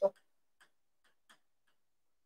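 Chalk on a blackboard while numbers are written: a few faint, light ticks and taps spread through near silence. A woman's voice cuts off at the very start.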